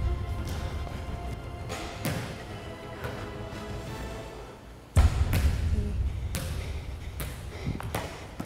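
Background music with several thuds of a volleyball striking the targets and bouncing on the floor. The loudest is a heavy, booming thud about five seconds in.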